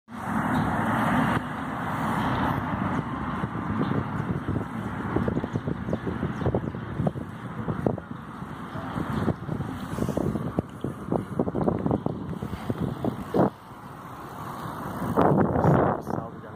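Wind buffeting the phone microphone on a moving bicycle, a continuous rushing rumble with many short knocks and rattles. A louder knock comes near the end, followed by a brief lull.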